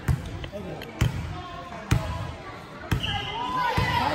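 A basketball dribbled on a hardwood gym floor: four sharp bounces, about one a second. Voices call out across the gym near the end.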